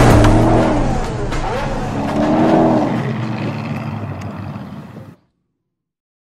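Closing sound of the teaser's soundtrack: a voice-like line with slowly rising and falling pitch over a deep steady rumble, fading and then cutting off abruptly about five seconds in.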